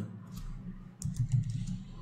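Computer keyboard being typed on: a few quick keystrokes entering a short word, in two small bursts, the second about a second in.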